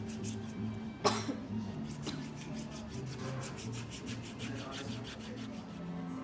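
A wooden-handled foot file is rasped against a thick heel callus, under background music with a steady beat. One loud, sudden cough-like sound comes about a second in.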